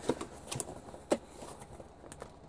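A few light clicks and knocks from objects being handled on a workbench: one near the start, another about half a second in, and one just after a second.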